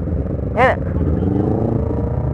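Motorcycle engine idling steadily, its pitch drifting slightly up and down. A person's voice calls out briefly about half a second in.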